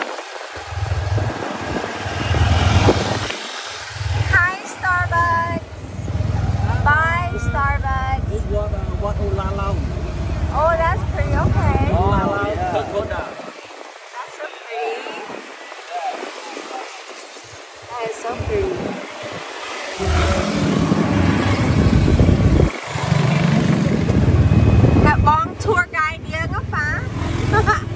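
Ride in an open tuk-tuk in traffic: the low rumble of its motorbike engine and the road, falling away for several seconds around the middle and coming back. People's voices talk over it.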